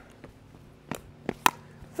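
A plastic pickleball striking paddles and the hard court: a few sharp pops clustered between about one and one and a half seconds in, the last the loudest.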